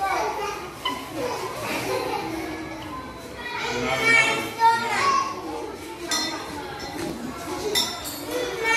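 Children's voices speaking, several of them, in a bare room.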